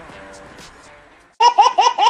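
Music fades out, then about one and a half seconds in a baby starts laughing hard: a loud, quick run of high-pitched laughs.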